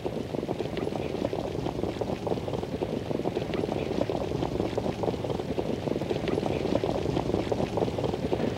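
Outdoor harness-racetrack ambience: a steady low rumble with wind on the microphone, as the field moves up toward the start.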